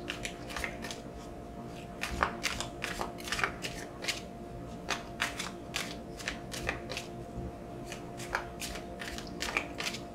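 A deck of large cards being shuffled overhand by hand: a run of quick papery flicks and slaps in uneven clusters, over a faint steady hum.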